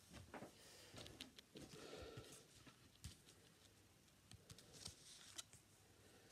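Faint, heavy breathing of a man winded after a set of 50 squats, with a few soft clicks and rustles in the second half.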